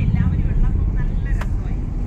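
Car driving along a street, heard from inside the cabin with the window open: a loud, steady low rumble of road and wind noise, with faint voices beneath it.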